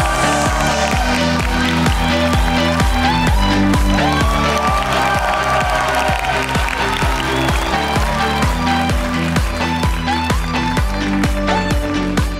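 Upbeat stage music with a steady beat and bass line, with audience applause under it.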